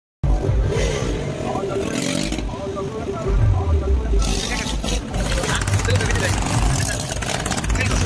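Motorcycle engines revving as riders ride wheelies, over crowd voices and loudspeaker music.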